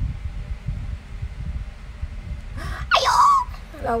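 A woman's brief, sharp vocal sound about three seconds in, not speech, with a pitch that drops steeply and then wavers, over steady low rumbling noise.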